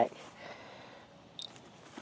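Low background hiss with a single faint, short click about one and a half seconds in.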